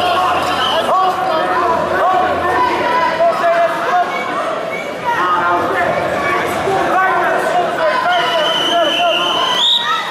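Many voices talking and calling out at once, an overlapping crowd chatter with no single clear speaker, echoing in a large sports hall.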